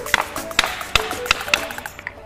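Hand hammer striking a steel bearing seated in a pallet truck's bogie wheel, about five sharp metal-on-metal blows roughly two a second, each with a brief ring. Background music plays underneath.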